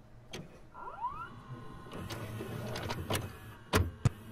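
VCR tape mechanism sounds: scattered clicks, a short rising motor whine about a second in, and a louder clunk near the end, as the tape is loaded and set to play.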